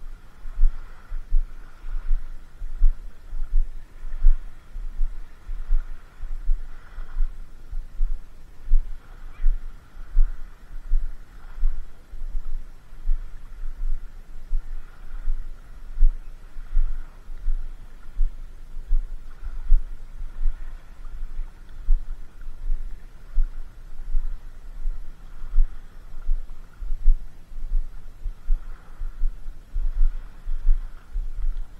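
Irregular low thumps on the camera's microphone, about one or two a second, over a faint steady hiss.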